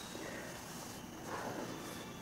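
Faint rustling of fingers sweeping in circles through a mound of flour on a wooden board, hollowing out a well in the middle of it.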